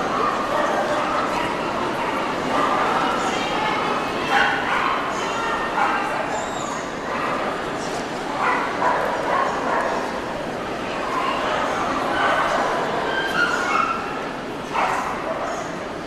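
Dogs barking now and then over the steady chatter of a crowd.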